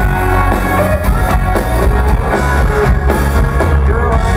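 Live country-rock band playing an instrumental passage: electric guitars over a drum kit with a steady beat, loud through the PA.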